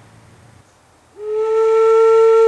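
A single held note blown on a homemade thin-wall PVC-pipe Native American style flute, starting just over a second in with a slight upward scoop, then steady. It is a test blow to check the tone after the sliding collar over the airway was pushed down to make it less airy.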